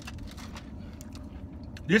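Faint chewing and lip-smacking of a person eating a soft ice cream cookie sandwich, a few small mouth clicks over a steady low hum inside the car. A man's voice starts right at the end.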